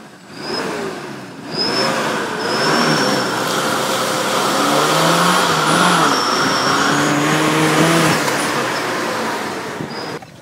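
Daihatsu Feroza's four-cylinder engine revving up and down under load as the 4x4 drives through muddy water, over a loud rush of tyre and water noise that starts about half a second in.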